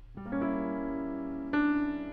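Grand piano playing a held chord, with a second chord struck about a second and a half in.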